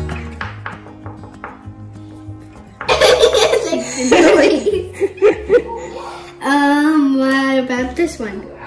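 A young girl laughs out loud in a run of bursts for about three seconds, then gives a longer drawn-out vocal sound near the end. Soft background music fades out in the first second.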